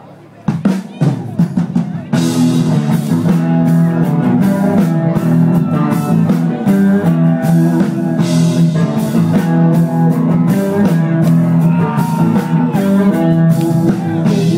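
Live rock band playing an instrumental intro on drum kit, electric guitars and bass. A few separate drum hits start about half a second in, and the full band comes in with a steady beat about two seconds in.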